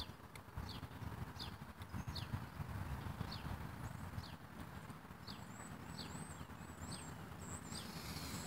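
Small birds calling: a short falling chirp repeated a little over once a second, joined about four seconds in by a second bird's thin, high whistled notes. A low, uneven rumble runs underneath.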